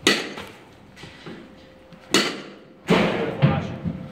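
A bat striking tossed balls in a batting cage: a sharp crack right at the start and another about two seconds in, then a longer cluster of knocks and thuds around three seconds in.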